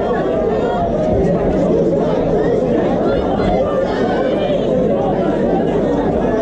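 Crowd of spectators talking and shouting over one another, a steady babble of many voices in a large hall.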